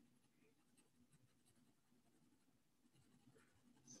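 Very faint scratching of an HB pencil shading on paper, close to silence.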